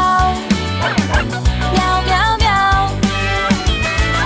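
Dog barking several times, "au au au", over children's song music with a steady beat.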